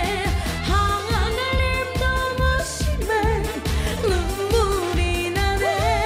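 A woman singing a Korean trot song live over a backing track, her held notes wavering with vibrato above a steady bass beat.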